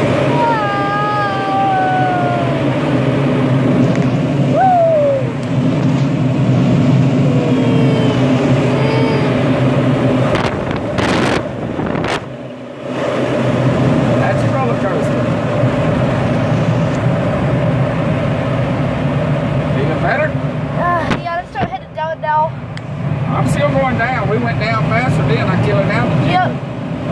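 Steady rush of airflow around a glider cockpit in flight, with a low hum under it, dipping briefly twice. Short falling and wavering tones lie over it near the start and the end.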